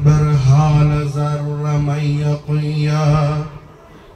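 A man's voice chanting a devotional Sufi praise into a microphone, drawing out long, steady notes. There is a brief break about two and a half seconds in, and the voice drops away shortly before the end.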